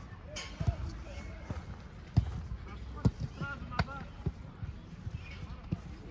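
Footballs being kicked during a training drill: several sharp thuds of boot on ball, the loudest about two and three seconds in, with short shouts from players between them.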